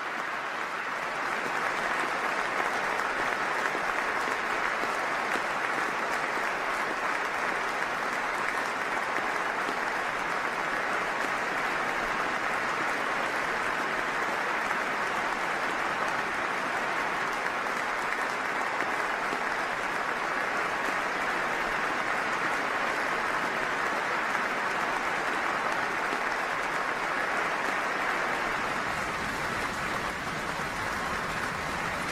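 Football stadium crowd and players applauding steadily, a sustained tribute applause with dense, even clapping.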